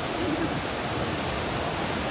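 Ocean surf breaking and washing up the beach: a steady rushing noise with no distinct events.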